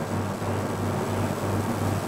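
Steady low hum with a faint even hiss: background room tone with no speech.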